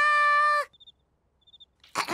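A cartoon girl's voice holding a high sung note that cuts off after about half a second, ending her flourish. Then near silence with two faint, short, high chirps.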